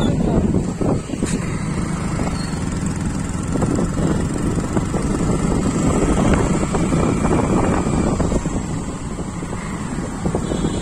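Steady running noise of a vehicle carrying the microphone along a road: engine and tyre rumble with wind buffeting the microphone.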